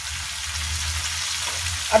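Star fruit slices frying in mustard oil in a pan, a steady sizzle.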